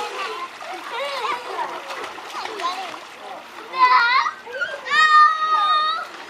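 Young children chattering and shouting while they splash in a backyard swimming pool. About four seconds in a child gives a loud high squeal, and near the end one long high call is held for about a second.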